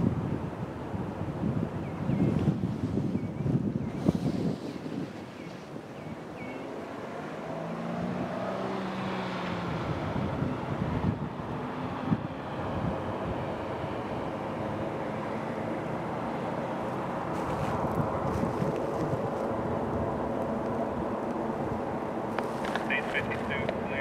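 Diesel locomotive engines of a trio of EMD yard locomotives droning steadily as the train approaches slowly from a distance, with wind gusting on the microphone in the first few seconds. A rapid bell-like ringing starts near the end.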